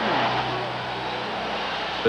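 Arena crowd cheering in a steady roar for a player introduction, with a low steady hum underneath.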